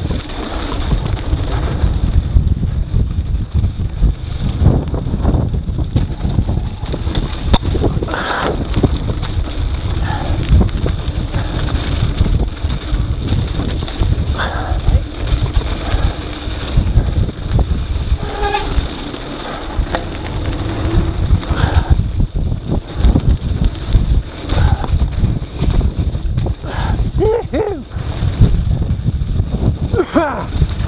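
Wind buffeting an action camera's microphone over the rumble and rattle of a mountain bike rolling fast down a rough dirt trail. A short rising-and-falling tone comes near the end.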